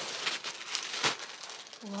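Paper crinkling and rustling as it is handled, with one sharp crackle about a second in.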